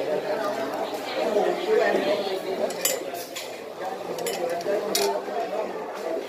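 Background chatter of diners in a busy restaurant, with several light clinks of dishes and utensils a few seconds in.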